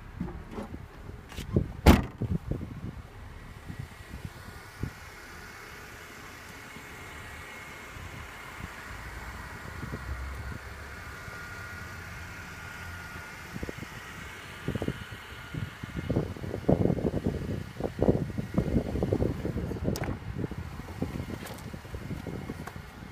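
A car trunk lid shut with a single sharp thump about two seconds in, then steady outdoor background noise, with low bumping and rumbling from camera handling and a click near the end as the car's door is worked.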